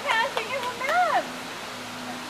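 A young child's high-pitched voice: quick short calls and then a longer rising-and-falling cry in the first second or so, over a steady rush of water.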